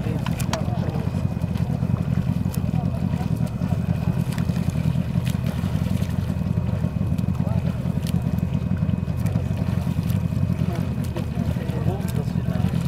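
Boat motor running steadily as a low rumble, with faint voices near the start and end.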